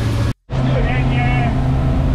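Outboard motor on a powerboat running steadily at cruising speed, a constant low drone with water and wind noise under it. The sound cuts out abruptly for a moment just under half a second in, then the same drone resumes.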